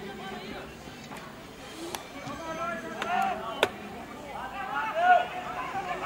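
Shouting voices, with calls that rise and fall around the middle and near the end, the loudest about five seconds in. Two sharp knocks cut in, about two and three and a half seconds in.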